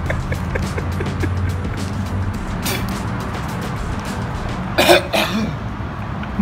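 Background music, and about five seconds in a person's harsh cough and retch as he gags on a mouthful of raw oyster.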